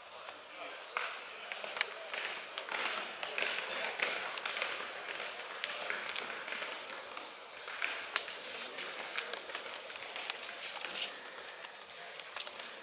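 Indistinct chatter of a crowd of onlookers standing around, a steady murmur with no single clear voice, with scattered sharp clicks throughout.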